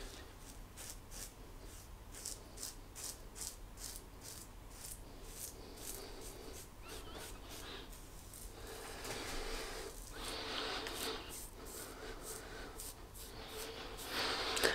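Safety razor blade scraping over stubble on the neck in short, quick strokes, faint, about three a second, with a softer rubbing stretch partway through.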